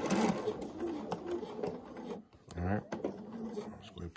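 Sewing machine stitching a binding strip onto a quilt edge, running for about two seconds and then stopping, followed by a few light clicks.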